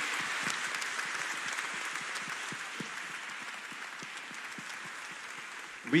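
Applause from a gathered congregation, a dense patter of many hands clapping that slowly fades away.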